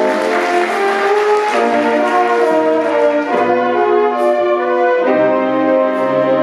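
School jazz band playing: saxophone and brass sections hold sustained chords, the harmony moving to a new chord about every two seconds.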